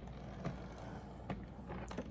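Plastic robot mop being slid and rolled out of its docking station by hand: a faint scraping rumble with a few light clicks.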